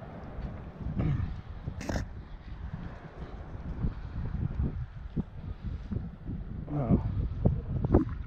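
Wind buffeting the microphone, a rough low rumble throughout, with one sharp click about two seconds in and a couple of brief vocal sounds.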